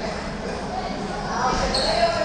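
Table tennis balls clicking off bats and tables in a hall, with voices talking in the background.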